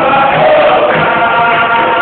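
Capoeira roda music: a group singing a chorus in unison over berimbaus and an atabaque drum beating a steady pulse about twice a second.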